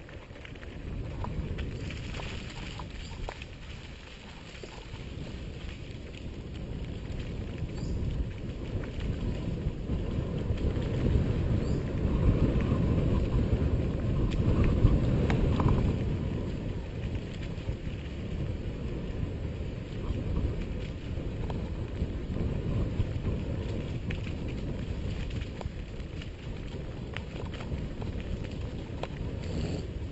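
Mountain bike rolling over a bumpy dirt trail: a steady rumble of wind on the microphone and tyres on dirt, with small rattles and knocks from the bike, loudest about halfway through.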